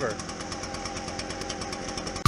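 Echo PB-755ST backpack leaf blower's 63.3 cc two-stroke engine idling steadily, running on its first cold start.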